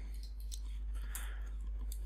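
A few faint, short computer mouse clicks over a steady low electrical hum.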